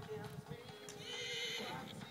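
A horse whinnying once, a high quavering call lasting under a second, starting about a second in, over steady background music.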